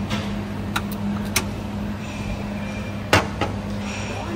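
Background of a self-service cafeteria counter: a steady low electrical hum, with a few light clicks and one sharp clink of crockery about three seconds in.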